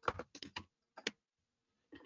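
Computer keyboard typing: a quick run of about six keystrokes, then one more about a second in.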